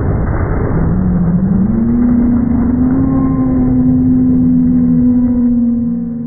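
Pickup truck engine revving up, its pitch rising over about a second and then holding steady and loud.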